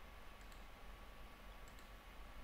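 Faint computer mouse clicks, two quick pairs: one about half a second in and one near the end, over a quiet steady hum.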